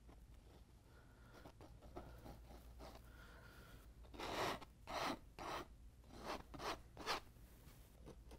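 Palette knife scraping oil paint onto stretched canvas: faint rasping strokes at first, then a run of about six louder, quick scrapes in the second half.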